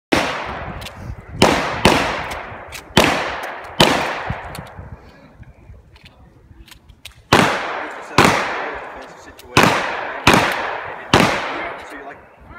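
Handgun fired ten times at a steady pace, five shots, a pause of about three seconds, then five more, each shot echoing off the range.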